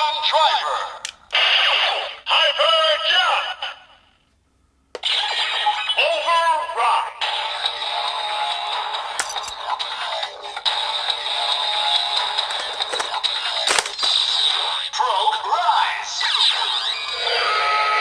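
Electronic voice calls and a looping standby tune from a DX Hiden Zero-One Driver toy belt's speaker, as the Assault Grip-fitted Shining Hopper Progrise Key is loaded into it. There is a short break about four seconds in and a sharp click near the middle, and the belt calls "Warning, warning" near the end.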